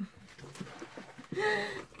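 A woman's short wordless voiced sound, one held vowel or hum of about half a second, a little over a second in, after a stretch of faint handling noise.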